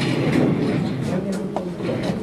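Indistinct murmured voices with a low rumble and a few faint knocks, the handling noise of a handheld microphone being passed along.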